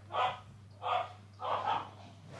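A dog barking three times in quick succession.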